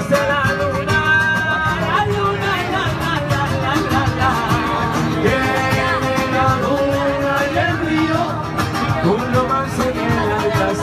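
Live acoustic guitar accompanying male voices singing a song in Spanish, with long held sung notes about a second in and again around the middle.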